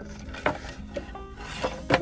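Wooden signs being handled and shifted on a store shelf, with a few light knocks and rubs of wood on wood. Faint background music underneath.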